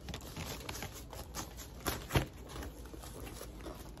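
Rustling of plastic and bubble-wrap packaging being handled and folded around a trim piece, with scattered small clicks and one sharper tap about two seconds in.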